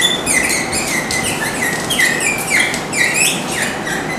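Dry-erase marker squeaking on a whiteboard as words are written: a quick series of short, high squeaks, each sliding down in pitch, about three a second.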